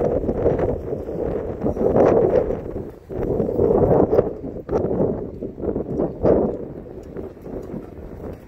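Wind and handling noise on a handheld phone microphone carried while walking, swelling and falling every second or two, with a few footsteps or knocks on the pavement. A short laugh comes right at the start.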